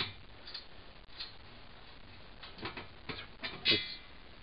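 A few faint, scattered clicks and scrapes as a small screw is undone by hand from the headstock of a Clarke wood lathe.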